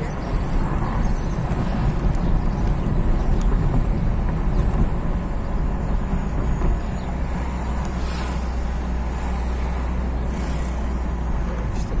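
Road and engine noise heard from inside a moving car: a steady low rumble, which grows deeper and stronger from about seven seconds in until near the end.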